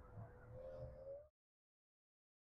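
Near silence: faint outdoor background with a faint steady tone, cut off to dead silence about a second and a quarter in.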